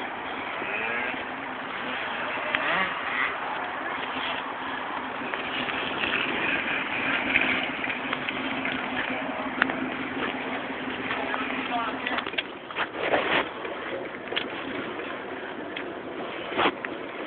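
Jeep Wrangler TJ engine idling with a steady hum under rustling, handling noise. The hum stops about twelve seconds in, and a few knocks and thumps follow.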